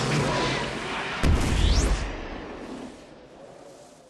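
A whoosh swelling up, then about a second in a sudden deep boom with a quick rising whistle over it, dying away over the next second or two: a booming title sound effect.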